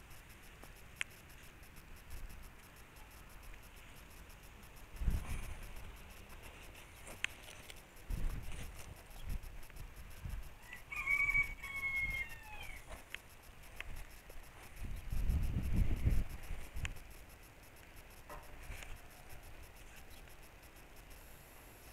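A rooster crowing once, a single call of about two seconds near the middle that falls away at its end. Low thumps and rumbles on the microphone come and go around it.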